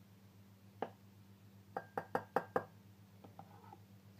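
A handful of sharp knocks and clicks as hard things tap against a clear plastic blender cup: one about a second in, then a quick run of five or six near the middle with a short ring, and a few faint ticks near the end.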